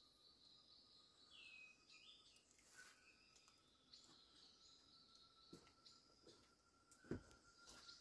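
Near silence, with faint birds chirping in the distance, a thin steady high tone in the background, and a soft knock near the end.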